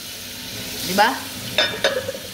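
Hand dishwashing at a sink: a steady hiss of running tap water.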